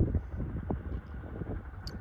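Wind buffeting the microphone: a low, gusty rumble.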